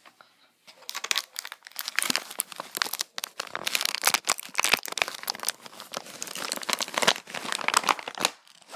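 Toy packaging crinkled and crumpled by hand, in quick irregular crackles that start about a second in.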